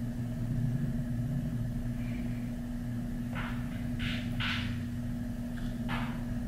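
Steady low hum of room background noise, with three short soft hissing sounds about three and a half to five seconds in.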